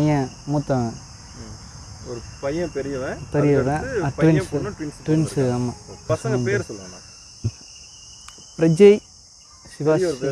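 Steady high-pitched chorus of insects, heard under a man's voice talking in short stretches.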